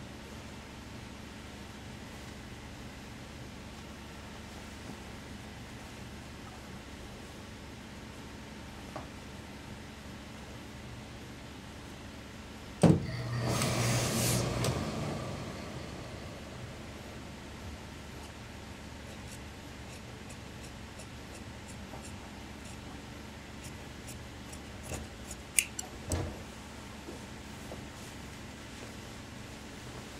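Steady low room hum, broken about halfway through by a sharp knock and a couple of seconds of rustling as a suit jacket's fabric and lining are handled, with a few light clicks near the end.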